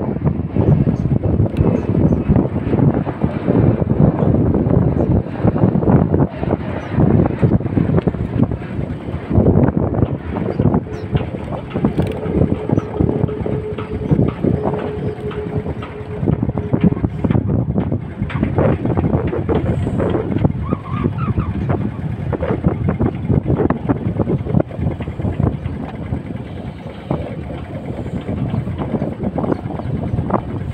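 Wind buffeting the camera's microphone in a gusting, uneven rumble, mixed with the rustle and scrape of a jacket rubbing over the microphone.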